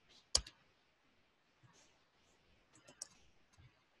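Computer keyboard keys clicking as text is typed. The sounds are faint and sparse: one sharper click about a third of a second in, then a few quick, faint keystrokes near three seconds.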